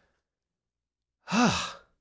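After about a second of silence, a man sighs once: a short breathy exhale whose pitch falls.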